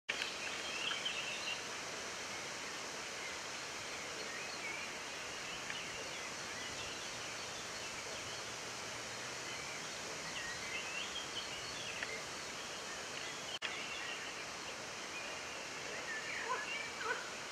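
Steady outdoor background hiss with faint, scattered bird chirps, and a momentary cutout of the sound near the end.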